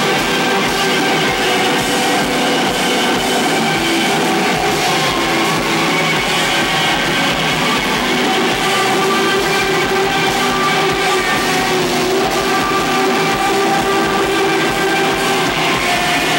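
A live rock band playing loud, dense music with electric guitar and bass guitar, recorded on a Hi8 camcorder's microphone. The held notes sustain, with no breaks.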